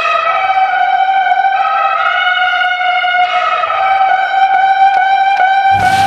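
A single trumpet-like brass note held for about six seconds, steady in pitch with slight shifts in its upper tones. A hip-hop beat comes in just at the end.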